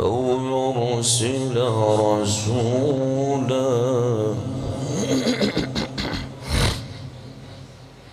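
A man reciting the Quran in melodic tajweed style: one long, drawn-out phrase with wavering ornaments, then a few shorter syllables, stopping about seven seconds in.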